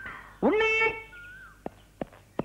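A single meow-like cry about half a second in, rising sharply and then held for half a second. It is followed by a faint short gliding tone and a sharp click near the end.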